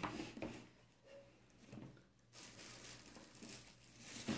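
Faint rustling and crinkling of clear plastic wrapping as a bagged cordless drill is handled and lifted out of its carrying case, louder in the second half.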